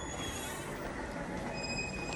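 Two brief high-pitched squeaks, one at the start and one near the end, over steady background noise. They come from the metal swing handle of a lead-shielded radioactive-material carrier box pivoting as it is picked up and carried.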